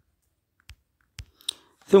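A few short, faint clicks about half a second apart in an otherwise quiet pause, just before a man starts speaking.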